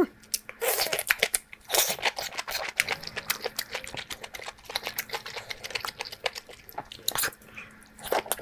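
Close-miked eating sounds: a person biting and chewing food, with crunching and wet mouth clicks coming irregularly throughout.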